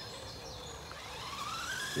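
Electric motor of an FTX Outlaw RC car whining, the whine rising steadily in pitch from about a second in as the car speeds up.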